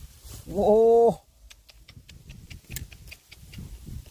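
A man's drawn-out exclamation "oh" about half a second in, then a few seconds of faint, scattered clicks and rustles as hands pick eggs out of a nest in the grass.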